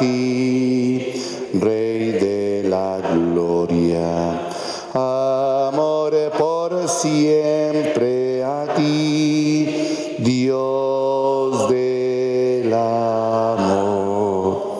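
A man singing a slow Spanish Eucharistic hymn in long held notes, in phrases separated by short breaths.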